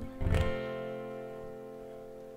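Acoustic guitar's closing chord of a song, strummed once about a third of a second in and left to ring, fading slowly.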